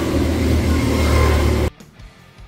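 Go-kart engines running on the track, a loud steady rumble that cuts off suddenly near the end.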